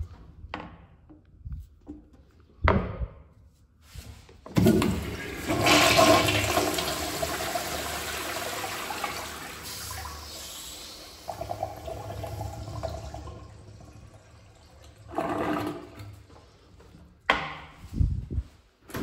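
A 1966 Eljer Auburn toilet bowl flushes through its flushometer valve. A sudden rush of water starts about four seconds in and runs for several seconds before tapering off. A few short knocks come before the flush and again near the end.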